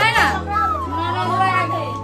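Background music with a long held note through the second half, with a voice over it.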